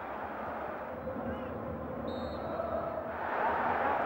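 Steady stadium crowd noise with a short, high referee's whistle blast about two seconds in. The crowd swells near the end.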